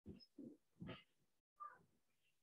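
Near silence, broken by four faint, brief sounds about half a second apart.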